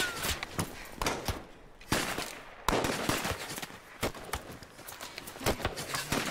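Scattered gunshots in a film action soundtrack: irregular sharp cracks, the two loudest at about two seconds and just under three seconds in, each trailing off in an echo.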